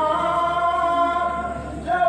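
A man chanting a noha, a Shia mourning elegy, unaccompanied, in long held notes. His voice falls away briefly near the end and comes back louder.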